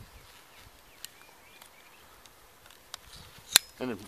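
Harbor Freight 8-inch folding saw's blade swung open and locking, with one sharp click near the end; a faint tick comes about a second in.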